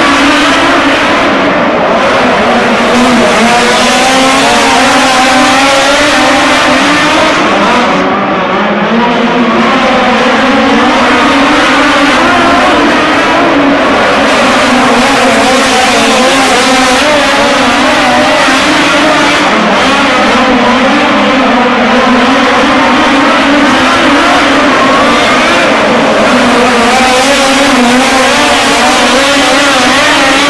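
Two midget race cars' engines running hard around a dirt oval, the pitch rising and falling continuously as they throttle through the turns and down the straights.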